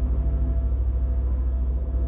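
Droning experimental soundtrack: a deep, steady low rumble with several sustained tones held above it.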